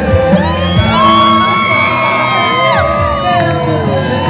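Live concert music from a stage sound system, with the audience cheering and whooping close around the microphone.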